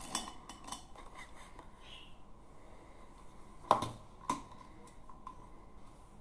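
Light clicks and taps of small hard makeup items being handled: a makeup brush and a palette being picked up and tapped. There are a few soft clicks in the first second, then a sharper knock a little past halfway and a lighter one just after.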